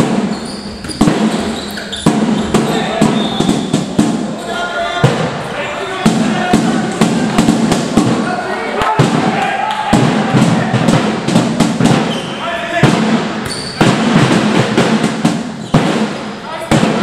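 Handball being played in a sports hall: the ball bouncing and thudding on the hall floor again and again, with players and spectators calling out, echoing in the large hall.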